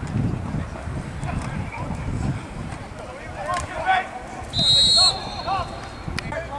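A referee's whistle blown once, a short, loud, steady shrill blast just before the end, blowing the play dead. Shouting voices from the sideline come before and around it.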